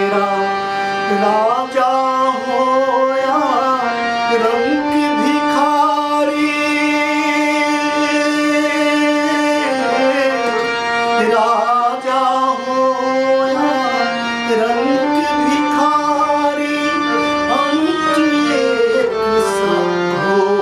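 A man singing a devotional Hindi bhajan in long held notes that slide between pitches, accompanied by a harmonium.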